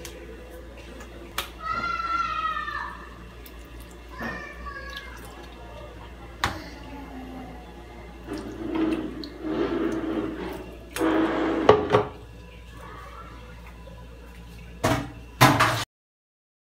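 Water poured from a plastic cup onto grated potato, a rushing pour of a few seconds about halfway through. Sharp knocks of a plastic cup and container being handled follow it, and before it a short falling call is heard twice.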